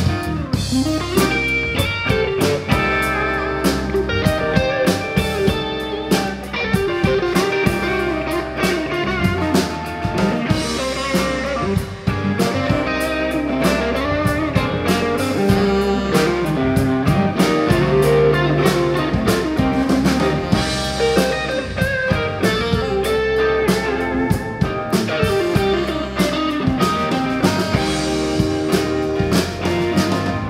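Live rock band playing an instrumental passage: electric guitar over bass guitar and a drum kit keeping a steady beat.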